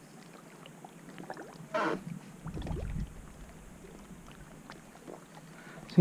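Quiet ambience aboard a small fishing boat on a lake: faint water against the hull, with a brief rustle about two seconds in and a low rumble just after.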